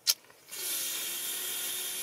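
A short click, then a long sigh breathed out, a steady hiss lasting nearly two seconds.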